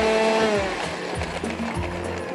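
Electric countertop blender blending a chile salsa, its motor pitch falling and winding down about half a second in as it is switched off. Background music plays throughout.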